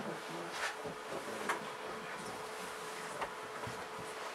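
Room tone: a faint, steady hum with low, indistinct murmuring and a few soft clicks.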